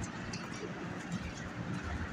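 Rock pigeons cooing low over a steady background of city street noise, with a few short, high chirps.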